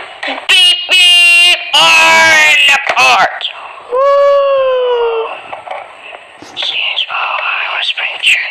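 A high-pitched voice calling out and cheering in drawn-out wordless cries, with one long falling cry about four seconds in and quieter voice sounds near the end.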